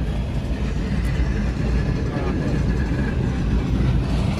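Steady low rumble of a diesel-hauled passenger train passing a level crossing, heard from inside a car together with the car's own engine.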